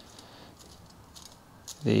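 A few faint, light clicks of small metal parts as the locking nut is unscrewed by hand from a cheap double-action airbrush.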